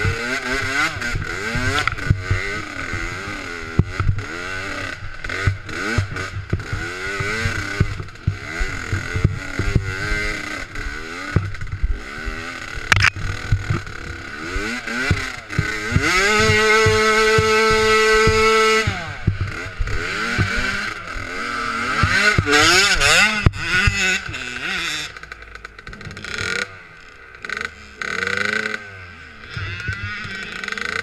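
Dirt bike engine revving up and down as it is ridden over rough ground, with knocks and clatter from the bike. About 16 seconds in it holds one steady high pitch for about three seconds. Near the end it drops to lower, quieter running.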